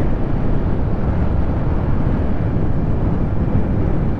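Steady wind rush on the microphone while riding a Honda Click 125i scooter at about 49 km/h, mixed with road and engine noise.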